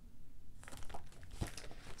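A cross-stitch pattern chart being handled and set down, its paper rustling and crinkling, with a sharp tap about one and a half seconds in.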